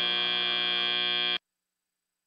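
FIRST Robotics Competition end-of-match buzzer: one steady buzzing tone marking that match time has run out, which cuts off suddenly about a second and a half in.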